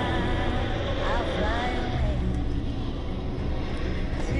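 Steady road and engine rumble inside a car moving at highway speed, with a few brief voice exclamations about a second in.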